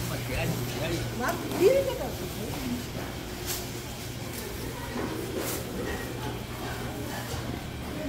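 Indistinct chatter of shoppers and vendors in a busy traditional market, over a steady low hum that stops near the end.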